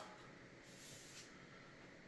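Near silence, with a faint swish of a flexible protective sleeve sliding off a long LED stick light, strongest around the middle.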